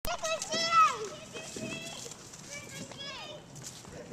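Small girls' high-pitched excited squeals and calls as they run, loudest about a second in, then shorter calls that rise and fall in pitch.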